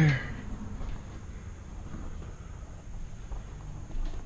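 Faint low background rumble with a few soft footstep taps on a bare concrete floor.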